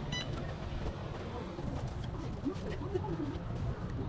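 Busy city-street background noise with a steady low rumble, as the recording moves along a sidewalk. A short high beep sounds right at the start, and a few low, curving call-like sounds come in the middle.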